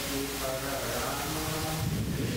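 Voices chanting a Sanskrit verse in a sing-song melody, the tones held and bending with no break.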